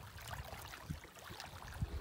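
Faint seaside ambience: small waves lapping at a rocky shore, with wind rumbling on the microphone and a few small ticks.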